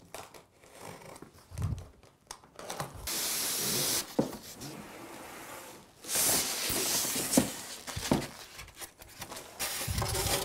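A large cardboard box being unpacked: a blade slitting the packing tape, then long scraping hisses of cardboard sliding against cardboard as the inner packing is pulled out, with a few knocks of the box on the table.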